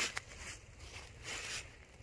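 Faint rustling and shuffling of movement and clothing, with a single light click near the start.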